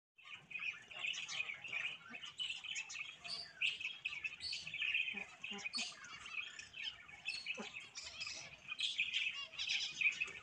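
Small birds chirping and peeping continuously: many short, high calls that overlap one another.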